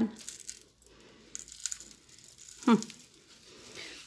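Fine silica sand trickling from a small metal cup onto gravelly top dressing, a faint hiss with light grainy rustling.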